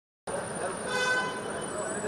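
A vehicle horn sounds once, briefly, about a second in, over street noise and voices.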